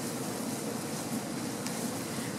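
Steady, even sizzle of dry spices and chopped garlic and onion frying in butter and oil in a stainless steel pan while being stirred with a spatula.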